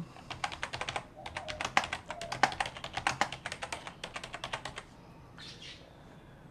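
Typing on a computer keyboard: a quick run of key clicks that lasts about four and a half seconds and stops shortly before the end.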